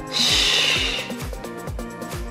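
Upbeat background music with a steady kick-drum beat, about two to three beats a second, and a loud hiss in the first second.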